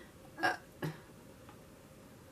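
Two brief vocal sounds from a woman, about half a second apart, the first louder, like a small hiccup or gulp.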